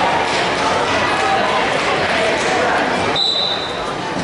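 Crowd chatter in a large gymnasium, many overlapping voices at a steady level. About three seconds in, a short, steady high-pitched tone sounds until the end.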